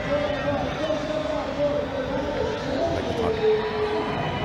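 Cricket stadium crowd noise with a wavering pitched sound held over it for several seconds, steadying onto a lower note near the end.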